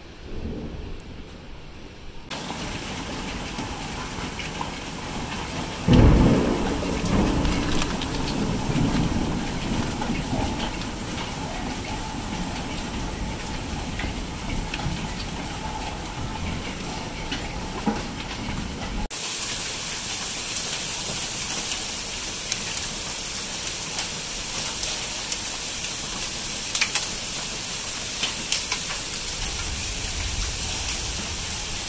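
Heavy rain and hail falling in a thunderstorm, with a loud thunderclap about six seconds in that rumbles away over several seconds. In the later part the downpour is a brighter hiss with many small ticks of hailstones hitting.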